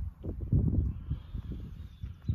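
Footsteps through tall grass, with a low, irregular rumble of wind and handling noise on a handheld phone's microphone.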